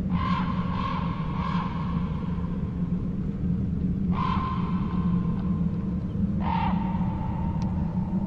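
A crow cawing: three caws in quick succession, then two single caws a couple of seconds apart, over a steady low rumble.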